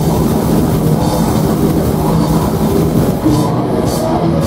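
Heavy metal band playing live and loud: a dense wall of distorted guitars, bass and drums, with the cymbals thinning out briefly near the end.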